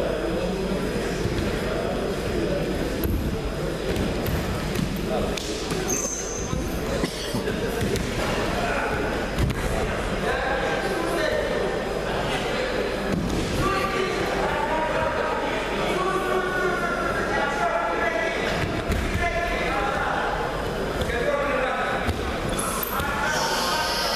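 Voices of spectators and coaches calling out in an echoing sports hall, mixed with irregular dull thuds and knocks.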